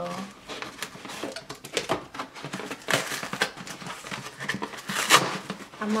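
Cardboard shipping box being cut and pulled open: irregular scraping, rustling and crackling of the cardboard, loudest about three and five seconds in.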